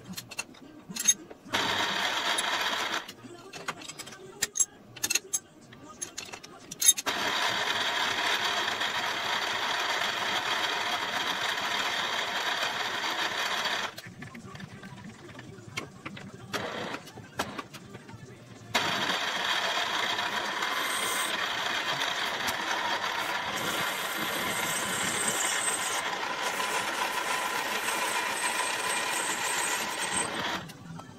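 Milling machine spindle running steadily in three stretches: briefly starting about a second and a half in, again from about 7 s to 14 s, and from about 19 s until the end. In the quieter gaps between runs there are sharp clicks and knocks of tools and parts being handled on the machine table.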